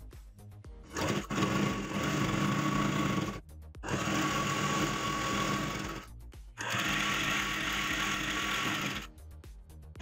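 Usha sewing machine running in three bursts of about two and a half seconds each with short pauses between, stitching down the folded side hem of a curtain.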